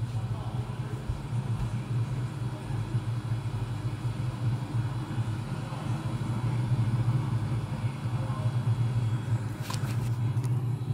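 Steady low rumble from the launch webcast's audio, played through the monitor's speakers, with no commentary over it. A short click near the end.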